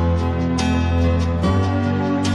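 Instrumental backing track (playback) of a slow gospel ballad, transposed two and a half tones down: sustained chords over a held bass note, with a percussive hit about half a second in.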